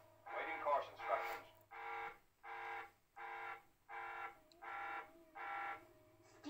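Electronic alarm buzzer from a TV soundtrack, played through the television's speaker: about six short pulses of one fixed pitch, roughly 0.7 s apart, starting a second and a half in. It is an emergency alert.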